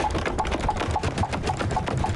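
Cartoon sound effect of a character's rapid running footsteps, a quick even patter of about ten taps a second on a wooden beam.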